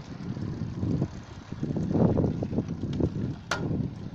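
Wind rumbling on the microphone of a moving bicycle, with road noise from the bikes climbing rough asphalt. A single sharp click comes about three and a half seconds in.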